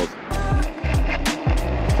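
Okai Panther ES800 dual-motor electric scooter accelerating hard from a standstill: a gusty rumble of wind on the microphone with tyre and motor noise, the front wheel spinning a little at the launch. Background music plays over it.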